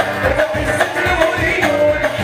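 Live band music through a stage sound system: a held, bending melody line over a steady, quick drum beat.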